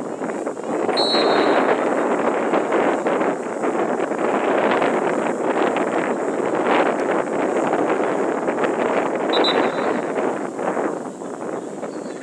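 Wind buffeting the camera microphone: a loud, steady, rough rushing noise, with two short high peeps, about a second in and again near the end.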